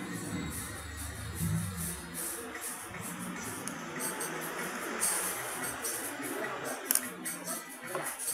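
Metal spoon stirring soup in a bowl, with a sharp clink against the bowl about seven seconds in, over background music.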